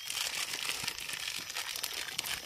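Plastic packaging crinkling and crackling as it is handled, a steady run of small crackles, while dog chew bones are being handed out.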